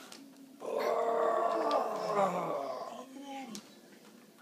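A toddler's long, drawn-out vocal sound lasting about two seconds, made with effort as she lifts a heavy pack of bottled water.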